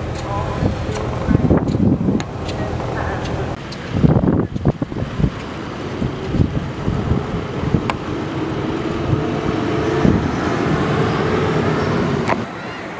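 Old farm machinery running: a steady engine hum, then, about four seconds in, a threshing machine running with a steady whine, with people's voices mixed in.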